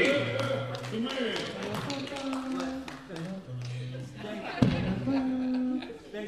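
Voices and held notes in a large, echoing hall, with many short sharp taps and one heavy thump about four and a half seconds in.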